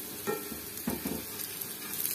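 Apple fritters (oladyi) sizzling steadily in hot oil in a frying pan.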